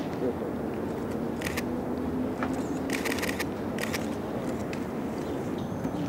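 Outdoor background of distant, indistinct voices over a steady hiss, broken by a few sharp clicks, with a quick run of them about three seconds in.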